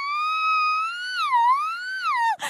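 A girl's high, wavering falsetto 'oooo' imitating an eerie sound: one unbroken held note that swoops down and back up about one and a half seconds in.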